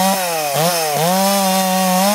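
Chainsaw running at high revs while cutting through eucalyptus limbs. Its engine note drops briefly about half a second in, then picks back up.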